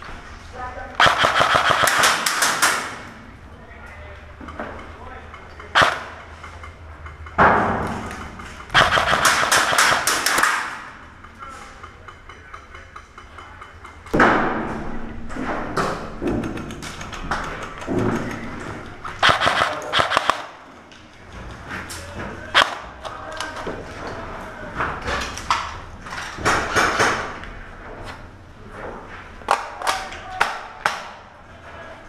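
Airsoft gunfire: several bursts of rapid shots, each a clattering string lasting one to two seconds, with single sharp shots between them.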